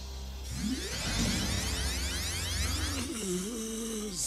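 Cartoon magic-power sound effect: a sustained, shimmering, sweeping whoosh over a low rumble, starting about half a second in. About three seconds in, a music melody takes over.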